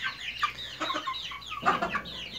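A brood of young speckled chickens peeping together: many short, overlapping calls that fall in pitch, with one louder, lower call near the end.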